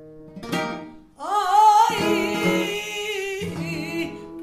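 Flamenco seguiriya cante: a female flamenco singer's voice enters about a second in with a long, wavering melismatic line over acoustic flamenco guitar. The guitar strikes a chord just before she comes in and again near the end.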